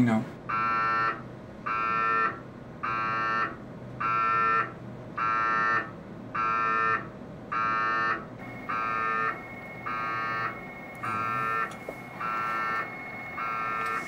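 MRI scanner running a scan sequence: a buzzing tone pulsing evenly about once a second, each pulse about half a second long.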